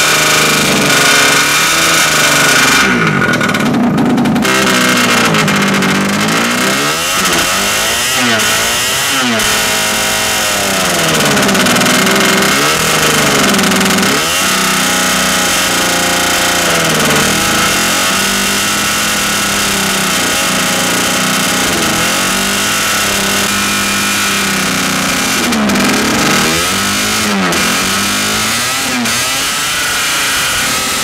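Small two-stroke engine running through a home-welded expansion pipe with a wastegate hole, its revs swinging up and down unevenly again and again. It responds and revs only a little as the hole is manipulated, which is really weird behavior.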